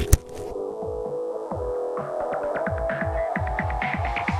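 Electronic closing-theme music: a sharp hit right at the start, then a low droning pulse with falling bass thuds about four a second, joined about halfway by a quickening run of higher drum strokes that builds toward the end.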